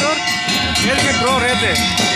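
Loud festival procession din: music playing with several voices calling out over it.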